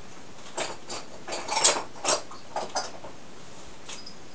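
Hand pump gun of a plastic vacuum cupping set being worked on the suction cups to draw suction: a run of short mechanical clicks and rasps, loudest about halfway through.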